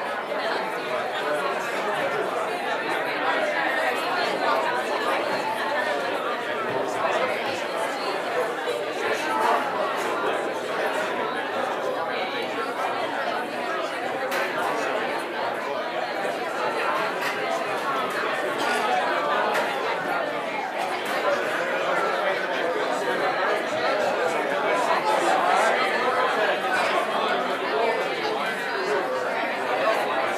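Many people talking at once in a large hall, a steady chatter of overlapping conversations with no single voice standing out.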